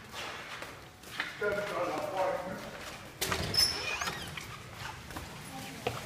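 Indistinct voices talking, with a sudden knock about three seconds in.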